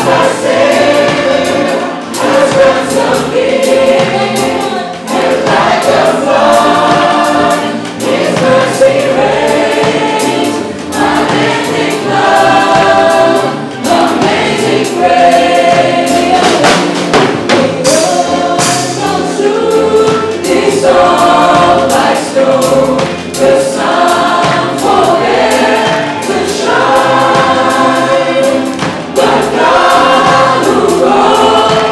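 Live worship band with a drum kit playing a song, with many voices singing the melody together.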